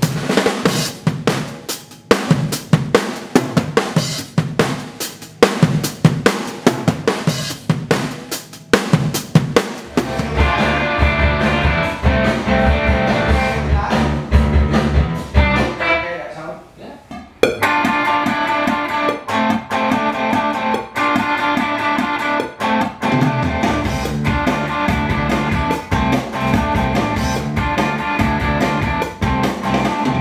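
Rock drum kit played alone for about ten seconds, then electric guitar and bass come in with a sustained part. The music drops out for about a second and a half just past the middle and then resumes.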